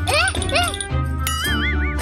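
Cartoon background music with a baby character's short, high cooing sounds that rise and fall, then a warbling cartoon sound effect in the second half.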